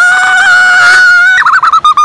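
A child's high-pitched scream, held steady for about a second and a half, then breaking into a short wavering cry near the end.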